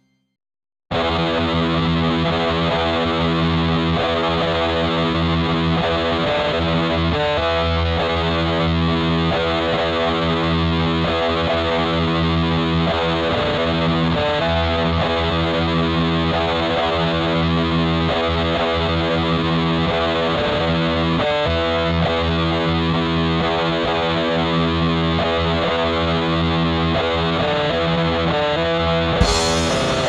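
Black/doom metal starting about a second in after a brief silence: a dense, steady wall of heavily distorted electric guitar. Sharp percussive strikes come in near the end.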